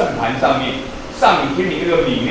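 A man lecturing in Mandarin: speech only, with no other sound standing out.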